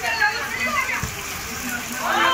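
Steady rain on a wet concrete floor with water splashing underfoot, over the voices of players calling out. A single short knock comes about a second in.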